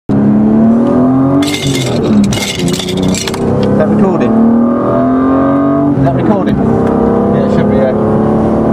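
BMW E36 M3's straight-six engine heard from inside the cabin under full throttle, its pitch climbing through the revs and dropping back at each of three upshifts.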